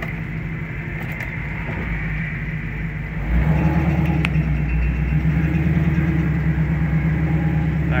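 Fuel-injected 6-litre V8 of a 1967 Camaro running steadily at low revs, heard from inside the car. About three seconds in, its note steps up louder and holds there.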